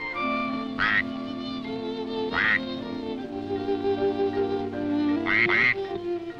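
Four short cartoon duck quacks: one about a second in, one about two and a half seconds in, and two in quick succession near the end. Background music with sustained notes plays throughout.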